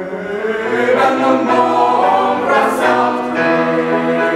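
Mixed-voice high school chamber choir singing in parts, the voices holding and moving chords together, with a sung 's' hiss a little under three seconds in.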